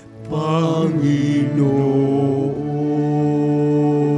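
Church hymn music: after a brief break at the start, a voice with vibrato sings a phrase, then long chords are held steadily to the end.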